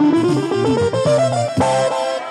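Live Balkan folk music: an instrumental fill of quick, ornamented melody runs with pitch bends, settling onto held notes over the band's accompaniment, between sung lines.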